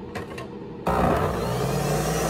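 Two short clicks, then a Nutribullet centrifugal juicer's motor switches on about a second in and keeps running steadily with a low hum.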